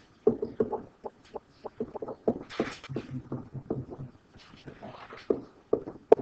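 A pen stylus tapping and scraping on a writing screen while handwriting, heard as a quick, irregular run of short clicks.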